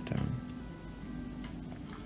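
A few sharp, separate clicks of a computer mouse, as the animation timeline is scrubbed and played, over faint steady tones.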